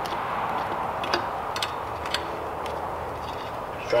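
A few light, sharp clicks of metal scooter headset parts being handled and fitted on the fork, spaced about half a second apart, over a steady background hiss.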